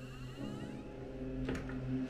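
A single sharp click as the latch of a wooden wardrobe door with a brass handle releases, about a second and a half in, over a faint steady low hum.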